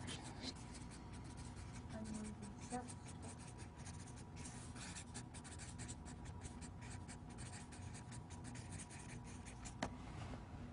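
Felt-tip marker writing on a flip-chart paper pad: a faint run of quick, short scratchy strokes.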